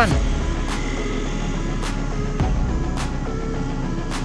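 Road traffic passing: car and motorcycle engines make a steady low rumble, with faint background music under it and a few short clicks.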